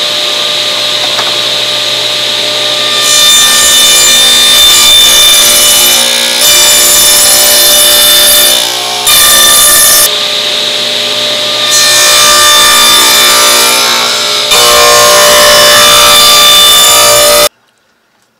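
Table saw running with a steady whine and cutting dados in wooden boards. From about three seconds in there are several louder, brighter stretches of cutting as boards are fed through. The sound cuts off suddenly near the end.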